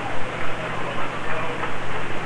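Crowd noise from the football stands: a steady wash of many voices with a low electrical hum under it.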